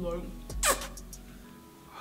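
A short, loud whoosh falling in pitch from high to low, a little over half a second in.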